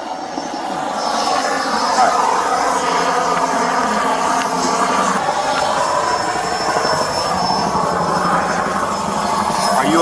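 Steady road-traffic noise of vehicle engines running and passing on a busy road, growing louder about a second in and then holding steady.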